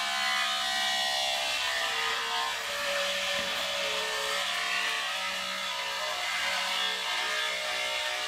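Corded electric beard trimmer switching on suddenly and buzzing steadily as it cuts through a full beard.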